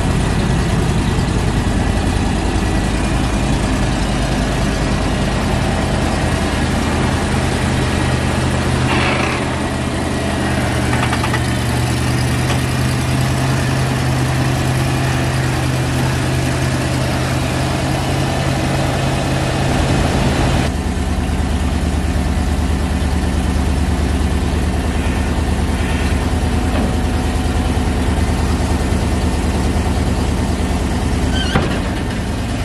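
GMC one-ton dump truck's engine idling steadily. About two-thirds of the way through, its tone changes suddenly, dropping to a lower hum.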